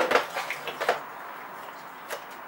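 A few light metallic clinks and knocks within the first second as the cartridge is worked loose by hand from a Grundfos UP-15 circulator pump's housing.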